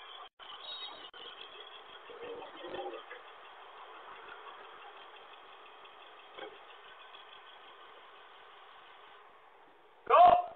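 Faint engine sound of vehicles passing on the street, heard through a doorbell camera's narrow-band microphone, with a brief swell about two and a half seconds in.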